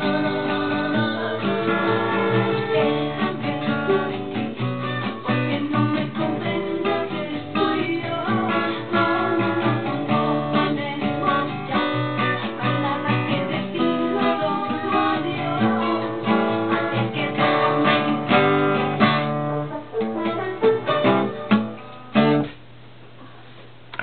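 Acoustic guitar strummed through a song's chord progression. The playing thins out into a few last strums and stops near the end, leaving only a faint hiss.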